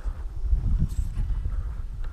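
Wind buffeting an action camera's microphone, a low uneven rumble, mixed with footsteps on grass as the wearer moves.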